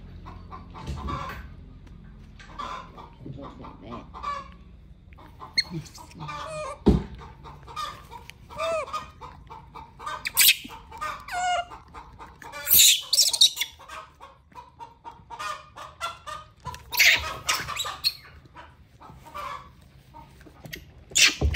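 Short animal calls repeating through the clip, clucking-like, with louder shrill squeals about ten, thirteen and seventeen seconds in.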